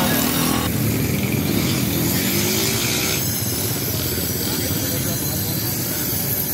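Busy street-market noise: people talking and a motorcycle engine running, with a steady background hubbub.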